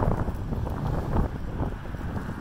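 Wind blowing across the microphone, an uneven gusty noise sitting mostly low.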